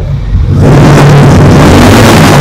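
Harley-Davidson X440's single-cylinder engine running with the bike standing still. The throttle is opened about half a second in, and the engine then holds loud and steady.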